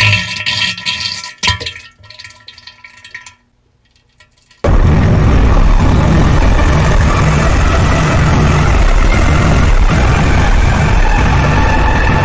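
A short edited sound clip with steady tones, then a few seconds of near-silence. From about five seconds in comes a very loud, harsh, distorted noise at a flat level, blasting across every pitch: a deliberately overdriven meme sound.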